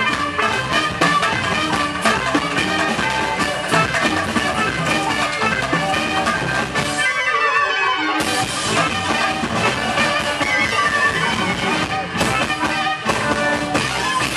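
Bulgarian wedding band playing live on clarinet, accordion, electric guitar, drum kit and keyboard. About seven seconds in the bass and drums drop out for about a second, leaving a thin high line, then the full band comes back in.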